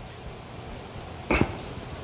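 Quiet room tone, broken once about two-thirds of the way in by a single short, sharp breathy sound from a person, like a quick cough.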